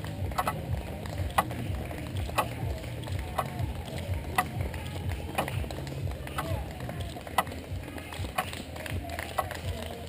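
Runners' footsteps on asphalt as a race pack passes, with a spectator clapping steadily about once a second over background voices.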